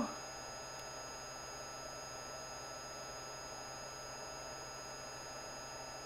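Steady faint hiss and electrical hum of bench equipment, with two thin high steady whines, unchanging throughout. No distinct handling or tool events stand out.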